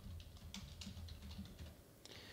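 Faint typing on a computer keyboard, a run of separate key clicks.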